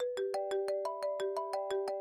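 Mobile phone ringtone: a melodic phrase of about a dozen quick notes, roughly six a second, that rings out at the end before starting over. The call goes unanswered.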